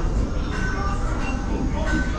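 Steady low rumble of an enclosed boat dark ride as the boat moves through the tunnel, with faint scattered higher tones above it.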